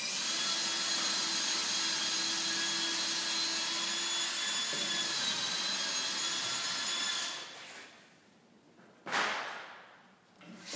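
A power tool's electric motor running at a steady high whine for about seven seconds, then winding down. A brief rushing burst follows about nine seconds in.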